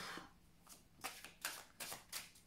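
A deck of cards being shuffled by hand, heard as a few short, soft rustles of cards slapping together starting about a second in.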